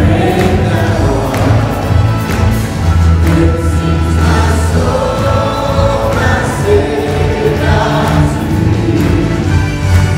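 Live church worship music: a band playing a hymn with a group of voices singing along over sustained bass notes.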